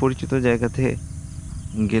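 A man's voice talking in two short bursts, with a faint, steady chirring of crickets behind.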